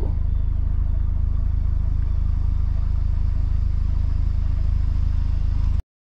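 Audi S3's turbocharged four-cylinder idling with a steady low rumble; the sound cuts off abruptly near the end.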